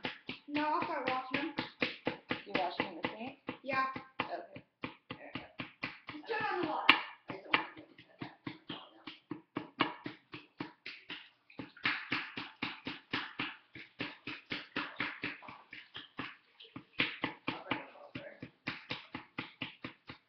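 Small hammer tapping quickly and repeatedly on a dinosaur excavation kit's plaster block in a metal baking tray, chipping it apart, about four or five taps a second with a couple of brief pauses.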